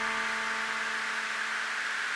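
Serge modular synthesizer between loud patterns: a held tone with evenly spaced overtones fades away in the first second, leaving a steady hiss.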